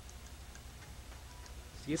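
Faint background soundtrack under the documentary: a low hum with a few soft, regular ticks, and a man's narration beginning near the end.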